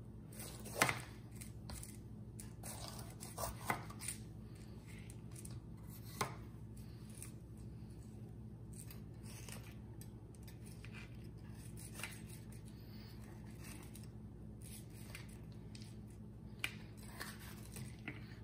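Chef's knife slicing a green bell pepper on a plastic cutting mat: soft scattered cuts, with a few short clicks of the blade meeting the mat, the sharpest about a second in.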